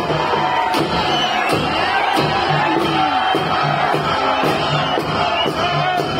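Festival folk music with a steady drum beat, about one stroke every three-quarters of a second, over a large crowd cheering and shouting.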